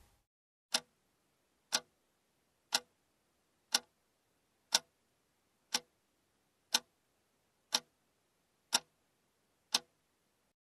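A clock ticking once a second, ten sharp ticks with dead silence between them. It is a sound effect counting off the time given to pupils to do an exercise on their own.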